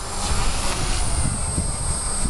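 Small RC helicopter in flight, its Turbo Ace 352 motor driving the rotor through an 18-tooth pinion: a steady rushing rotor noise with a faint high whine above it, mixed with low wind rumble on the microphone.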